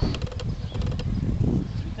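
Wind buffeting the camera microphone in irregular low rumbles, with a few short sharp clicks.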